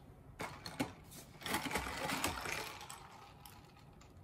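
Paper takeout bag crinkling and rustling as it is handled on a desk, with a few light clicks and knocks in the first second. The rustling is loudest about one and a half to two and a half seconds in, then fades.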